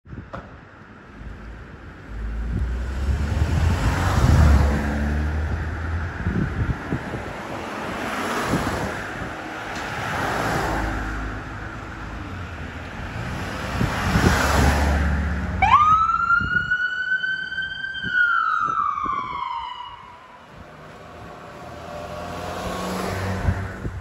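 Ambulance siren sounding as it responds, loud and swelling in repeated cycles of about two seconds, then a single clear wail that rises sharply about two-thirds of the way through, holds and slowly falls.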